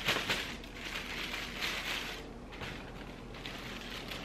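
Tissue paper crinkling and rustling as it is stuffed into a shiny foil gift bag, in busy crackling bursts that thin out after about two seconds.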